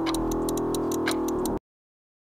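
Rapid, even ticking, about seven ticks a second, over a sustained low drone. Both cut off abruptly about a second and a half in, leaving total silence.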